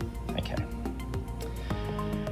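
Soft background music: held tones under a steady pulse of short plucked notes.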